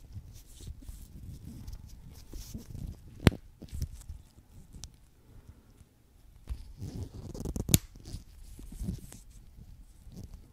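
Close-up handling noise of watch repair on a Rolex 3035 movement's keyless work: low rubbing and rustling of gloved fingers and tools, with two sharp metallic clicks about three seconds in and again about seven and a half seconds in.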